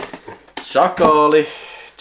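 Plastic VHS cassette cases clattering and knocking together as one is pulled out of a cardboard box. A man's short wordless vocal sound, lasting under a second, comes in the middle and is the loudest part.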